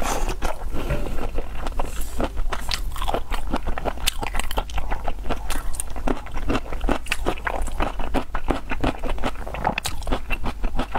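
Wet chewing and mouth smacking of raw shrimp in chili oil, heard as a dense, irregular stream of small clicks and squelches.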